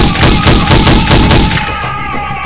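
Pistol gunshots in a rapid run, about seven shots in the first second and a half, over background film music.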